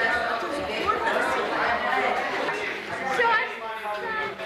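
Chatter of several people talking at once, with no single voice standing out.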